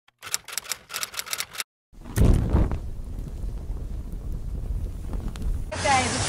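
Intro sound effects: a rapid run of about ten sharp clicks, a brief gap, then a loud deep hit that trails into a steady low rumble. Near the end it gives way to outdoor street noise.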